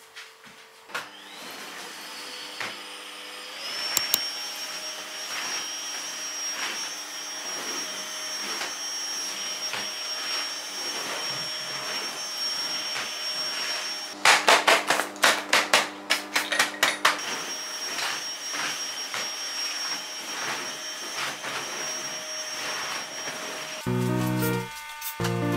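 Cordless stick vacuum cleaner switching on about a second in, its motor whine rising to a steady high pitch and running on. About halfway through there are a few seconds of rapid clattering over the motor.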